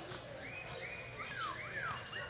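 Birds chirping: a quick run of short calls that arch up and sweep down in pitch, bunched in the middle.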